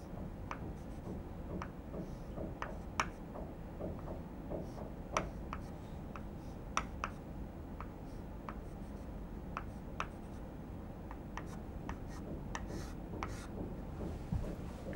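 Chalk on a blackboard, drawing short hatch strokes: a string of faint, sharp ticks and scratches at an irregular pace of about one or two a second.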